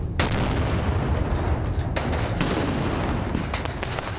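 Rocket motor firing with a loud, continuous low rumble. A sharp bang comes just after the start and another about two seconds in, with a run of crackling pops near the end.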